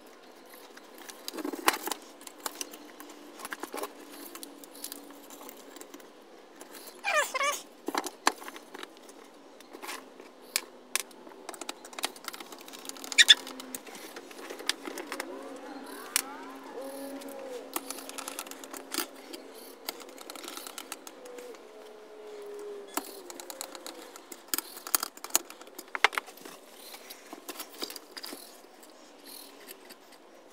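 Scattered clicks, taps and rattles of hand tools and small metal parts being handled on a workbench, with a short wavering pitched sound about seven seconds in.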